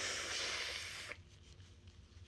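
A single breathy rush of air from a person with a cold, lasting about a second and cutting off sharply.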